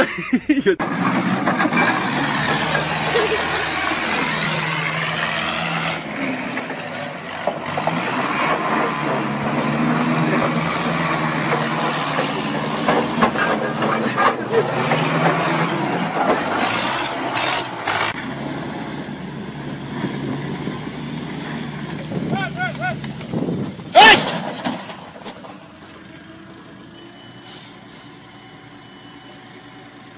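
Forklift engines running and revving hard, with one sharp loud crash about four-fifths of the way through; the sound gets much quieter after it.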